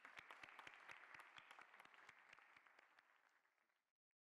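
Faint audience applause, many hands clapping, dying away and cut off abruptly just before the end.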